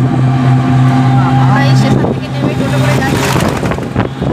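Motor of an open-sided auto-rickshaw running at a steady low hum under road and wind noise while moving along a road; the hum drops away about three seconds in.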